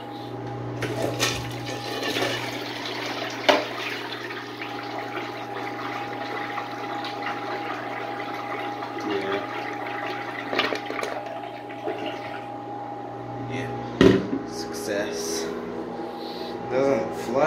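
A miniature model toilet flushing: water rushing and swirling down the bowl, over a steady low hum. A sharp knock sounds about three and a half seconds in and another near the end.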